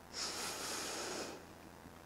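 A reciter's breath drawn in close to the microphone, a soft hiss lasting about a second, taken in the pause between phrases of Quran recitation.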